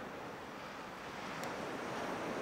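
Sea waves washing on a beach, a steady rushing noise that swells a little near the end.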